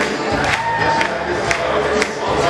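Live stage music with a steady beat of about two strokes a second, with an audience cheering over it.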